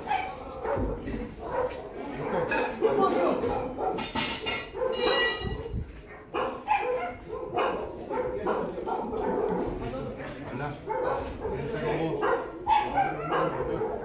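A dog barking repeatedly among men's voices and a called command.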